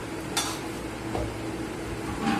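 Dough being kneaded by hand in a stainless steel bowl: soft handling sounds, with a sharp metallic click about half a second in and a lighter knock a little past one second.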